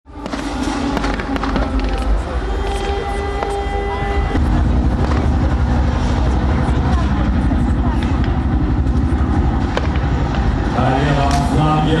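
Heavy, steady low rumble of a tank's engine and tracks as it drives across the field, with scattered sharp bangs through it. A loudspeaker voice and music are heard underneath.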